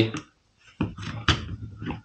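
Trigger group of a Hatsan Escort semi-automatic shotgun being fitted up into the receiver: a few short handling knocks and scrapes of the parts, sharpest a little under and just over a second in.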